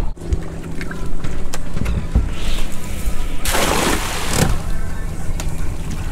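Boat's outboard motor running with a steady low hum, and a rush of noise lasting about a second a little past halfway.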